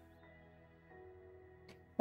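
Faint background music of soft, sustained tones, with a single faint click near the end.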